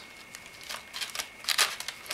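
Hands handling a clear plastic packaging tray and fan cables: a few light plastic clicks and rustles, the loudest about a second and a half in.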